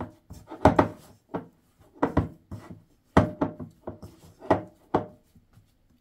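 A hand kneading very soft milk yeast dough in a ceramic bowl: irregular dull thuds and rubbing as the dough is pressed and turned, about one or two a second.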